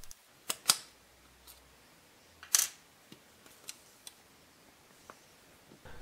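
A few small metallic clicks and clinks from the revolver's parts being handled as its trigger-guard screws are taken out and the grip frame loosened: two light clicks in the first second, a louder one about two and a half seconds in, then a few faint ticks.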